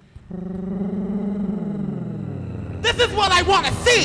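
Vogue/ballroom house DJ mix: a held, slowly falling tone comes in just after the start, then a voice sample with quickly swooping pitch cuts in near the end.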